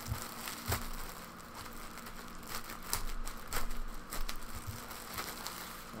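A thin plastic bag wrapped around a folded T-shirt crinkling and crackling in quick, irregular snaps as it is handled and pulled open.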